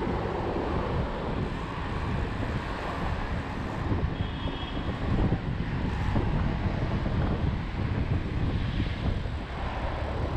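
Wind buffeting an action camera's microphone while riding a road bicycle, a steady low rumble with no breaks.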